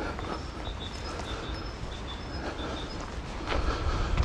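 Walking ambience: a low rumble of wind on the microphone that swells near the end, a bird chirping in short, repeated high notes, and faint footsteps on a gravel path.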